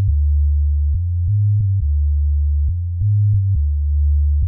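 A hip-hop track's bass line playing on its own: a deep, smooth synth bass stepping between a few low notes, with a faint click at each note change.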